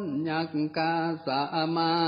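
A Buddhist monk reciting a Northern Thai folk sermon in a melodic chant, each syllable drawn out on a near-steady pitch with brief breaks between phrases. The broadcast audio sounds narrow and thin.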